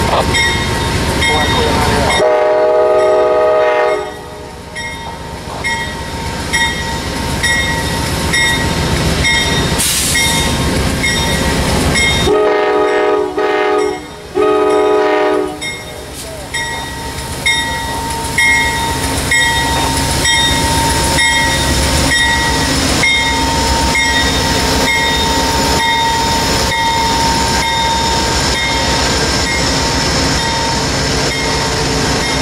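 Amtrak GE Genesis P42DC diesel locomotive sounding its Nathan K5LA five-chime horn: one blast about two seconds in, then two more close together about ten seconds later. Under it a bell rings evenly about twice a second, and the engine and train rumble past.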